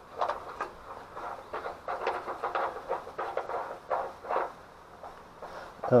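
Loose nut being turned on a steel guardrail bolt by a gloved hand: a quick run of short metallic scrapes and rattles that thins out about four and a half seconds in. It is a real guardrail nut coming loose, not a fake-nut cache.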